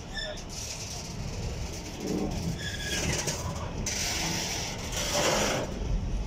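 Container wagons of a freight train rolling past close by: a steady low rumble of wheels on the rails, with a hiss of higher-pitched noise added for a couple of seconds in the second half.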